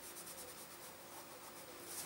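Fingertips rubbing white pastel and charcoal on black paper to blend it, a faint dry scratchy rubbing in short strokes.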